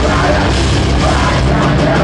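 A heavy metal band playing loud live: electric guitars, bass and drum kit in a dense, continuous wall of sound.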